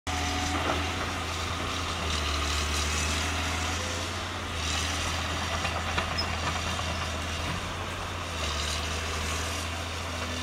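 Diesel engine of a Caterpillar 320C hydraulic excavator running steadily while the machine works its boom, the low engine note stepping a little louder and softer every few seconds, with a few light ticks in the middle.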